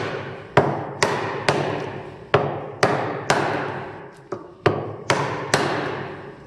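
A steel hammer striking the handle of a Narex mortise chisel, driving it into a block of wood to chop a mortise: about ten sharp blows, roughly two a second with a brief pause near the middle, each with a short ringing tail.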